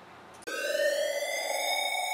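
Electronic transition sound effect for a title card: a sustained buzzy synthesized tone that starts abruptly about half a second in, its pitch rising slightly at first and then holding steady.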